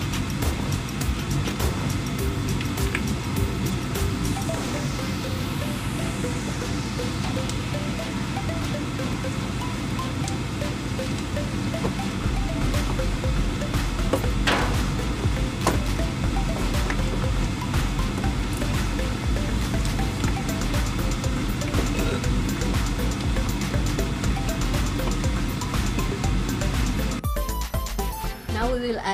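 Background music playing steadily, with a deeper bass coming in about halfway through.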